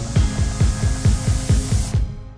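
Background electronic dance music with a steady beat of deep, pitch-dropping kick drums, about four a second. The high end of the mix cuts away just before the end.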